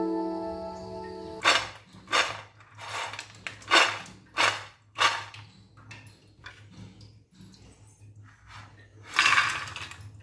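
Background music, then about six short crisp crunches about 0.7 s apart and one more near the end, from crunchy deep-fried batter-coated peanuts (namkeen peanuts); the crunch is the sign that they are fried crisp through.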